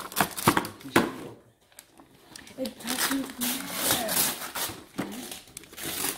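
Gift wrapping paper being ripped off a box and crumpled: quick tearing rips in the first second, a short pause, then more rustling and crinkling.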